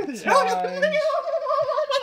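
A young man's long, quavering, high-pitched laugh, held on one wobbling note for well over a second.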